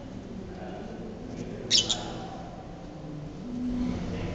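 Two short, high-pitched chirps close together from a small cage bird, a little under two seconds in, followed by a person laughing briefly.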